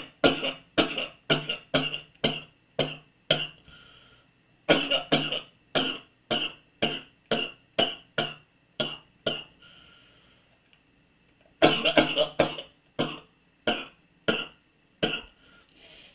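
A man's coughing fit: three runs of rapid, hacking coughs, about two a second, each run starting loud and growing weaker, with short breaths drawn in between.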